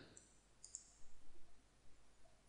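Faint clicking of a computer mouse button.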